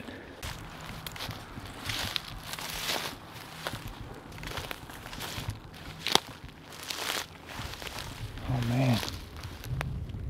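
Footsteps rustling and crunching through dry grass and brush, in uneven steps, with a single sharp click or snap about six seconds in. A man's voice is heard briefly near the end.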